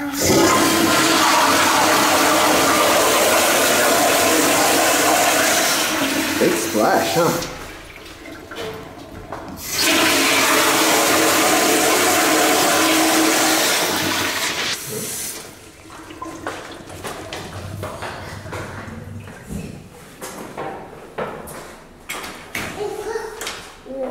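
Commercial flushometer toilet flushing: a loud rush of water for about seven seconds, a short lull, then a second rush for about five seconds before it dies down to quieter, uneven sounds.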